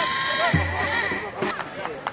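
People's voices at a soccer game, opening with one drawn-out call held for about a second, followed by shorter, broken voice sounds.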